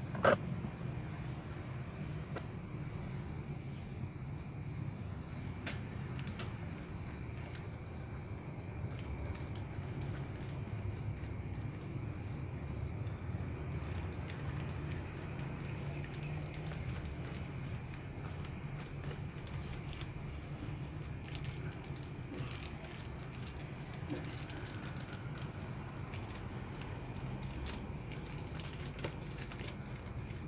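Clear plastic bag crinkling and clicking as hands work it around a plant cutting, in many small scattered ticks that come thicker in the second half, with one sharp click right at the start. A steady low hum runs underneath.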